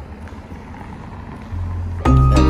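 Street ambience: a low, steady rumble of wind on the microphone and distant traffic. A deep bass note of background music comes in near the end.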